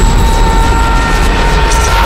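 Sound-design blast of a sonic scream: a loud roar with a steady high-pitched whine held through it.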